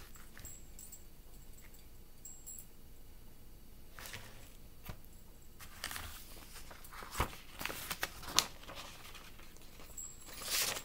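A vinyl record and its sleeve being handled: rustling and scraping of paper and cardboard, beginning about four seconds in, with a few sharp taps or knocks in the second half.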